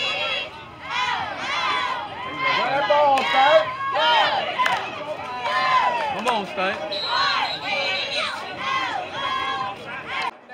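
Young cheerleaders shouting a cheer, high voices rising and falling in a repeating pattern, over crowd noise.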